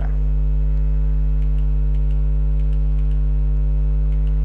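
Loud steady electrical mains hum, a low buzz with many overtones, picked up by the recording. Faint regular ticks run through it.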